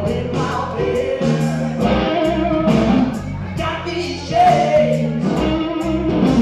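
Live blues-rock trio playing: electric guitar, bass guitar and drum kit with regular cymbal strokes, under sung vocals.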